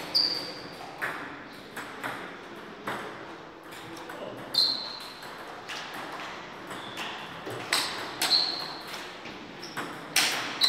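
Table tennis balls clicking off bats and pinging on the table. There are sharp hits about once a second through the first three seconds of a rally, then a few scattered louder, ringing bounces.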